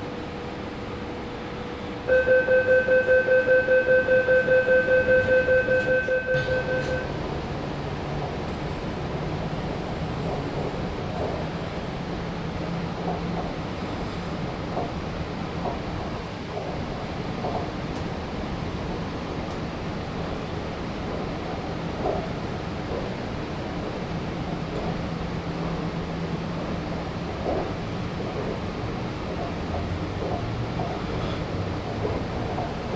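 Sydney Metro train's door-closing warning beeping rapidly for about five seconds, then the train's traction motors hum low as it pulls away and runs along the line with steady rolling noise.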